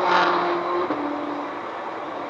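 Ferrari 458 Italia's V8 heard as it overtakes at speed, a single engine note that steps down in pitch about a second in and fades as the car pulls away. Steady road and wind noise is heard from inside the following car.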